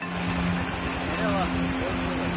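Steady rush of water overflowing from a water tank and running down a dirt track, with a steady low hum underneath and faint voices about halfway through.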